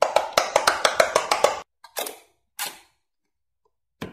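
Silicone bubbles on an electronic quick-push pop-it game pressed in quick succession, a fast run of clicking pops at about eight a second for the first second and a half. Then two separate short taps follow about half a second apart.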